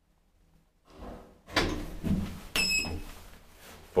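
Elevator's automatic car door opening after the car stops at the floor: after a near-quiet second comes a rising slide with clunks of the door mechanism, and a brief high ringing tone about halfway through.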